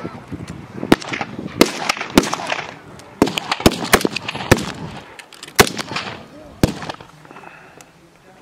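Rifle fire from several shooters on a firing range: about a dozen sharp shots at irregular intervals, some overlapping, thinning out near the end.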